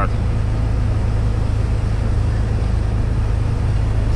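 Iveco EuroStar tipper truck's diesel engine running steadily while driving laden with grain, heard inside the cab as a deep, even drone with road noise.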